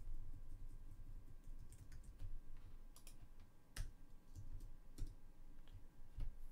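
Computer keyboard keys clicking as a command is typed, with sparse, irregular keystrokes.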